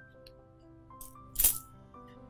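A bunch of keys jangling as it is dropped into an open hand: a faint jingle about a second in, then a short, sharp jangle about a second and a half in. Soft background music with held notes plays under it.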